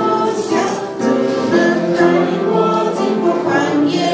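Congregation singing a hymn in Chinese, a woman's voice leading at the microphone, in phrases of long held notes.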